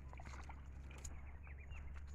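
Faint squelching and sloshing of footsteps wading through shallow mud and muddy water.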